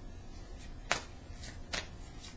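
A deck of tarot cards being handled and shuffled by hand, with a few light card snaps, the sharpest about a second in.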